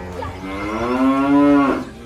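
A single drawn-out, low, moo-like animal call lasting about a second and a half. It rises slightly in pitch and falls away at the end.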